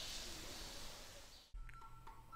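Faint steady background ambience that fades and cuts off abruptly about one and a half seconds in. It is followed by a few faint thin tones and a couple of soft clicks.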